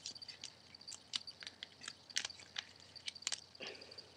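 Thin origami paper being folded and creased by hand: faint, irregular crinkles and clicks as the flaps are pressed down.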